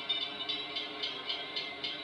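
Railroad grade-crossing warning bell ringing in a rapid, steady series of dings, about three to four a second, while the crossing signals are active.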